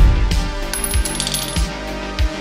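Intro music with a steady thumping beat, opening on a loud hit; about a second in, a quick run of metallic clinks like spent brass cartridge cases dropping and bouncing.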